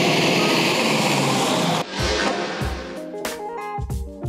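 A Nissan pickup truck driving off close past the camera: a loud rush of noise for about two seconds that cuts off suddenly. Guitar music with a steady thumping bass beat carries on after it.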